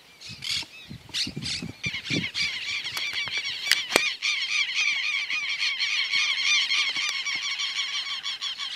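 A flock of birds calling: a few separate calls at first, then from about two seconds in a continuous, rapid run of repeated calls.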